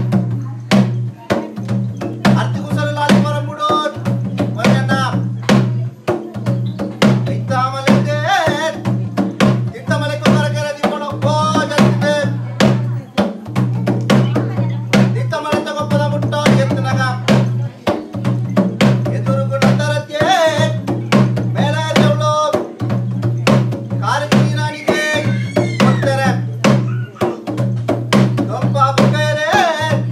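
Ritual kola music: thase drums beaten in a quick, continuous rhythm, with a flute melody in recurring short phrases. A steady low hum runs underneath.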